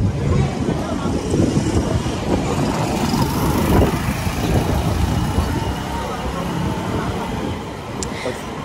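City street traffic: motorcycle taxis running along the street close by, under a heavy, uneven low rumble.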